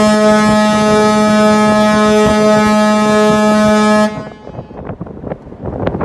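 A tanker's ship horn sounding one long, steady, deep blast that cuts off about four seconds in, given as a salute.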